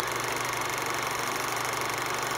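A steady, fast mechanical rattle, an outro sound effect, starting suddenly out of silence and running on evenly.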